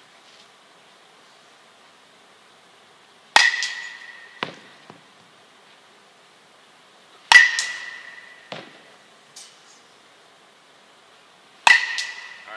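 A metal baseball bat hitting soft-tossed balls three times, about four seconds apart. Each hit is a sharp ping that rings on for about a second, followed by a softer knock.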